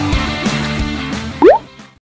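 Background rock music fading out, then a short, loud rising 'bloop' like a water drop about one and a half seconds in, an editing transition sound effect.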